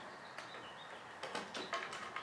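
Faint clicks and rubbing as a circuit board is fitted into a garage door opener's motor housing, with a brief faint high squeak near the start.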